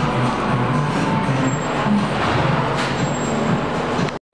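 Road traffic: a motor vehicle's engine running close by, a steady loud noise with a wavering low hum.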